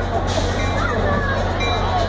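EMD GP40 diesel locomotive idling with a steady low hum, with a short hiss of air about a quarter of a second in.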